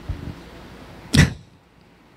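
A single short puff of breath into a handheld microphone about a second in, over faint room tone.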